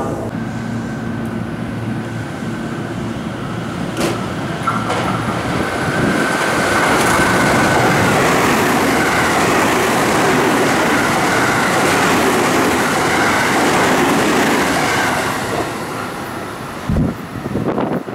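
JR West rapid-service electric train passing through the station at speed without stopping: the rush and rumble of its wheels on the rails build up from about four seconds in, stay loudest for about nine seconds, then die away. A brief low thump near the end.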